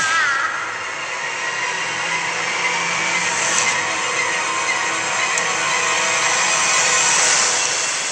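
Film soundtrack from a magical transformation sequence: a steady rushing wash of noise with faint held musical tones underneath, growing louder until about seven seconds in, then fading.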